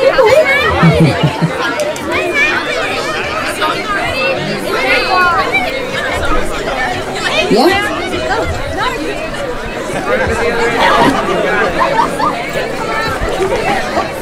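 Crowd of spectators chattering, with many voices overlapping into a steady babble and no single voice standing out.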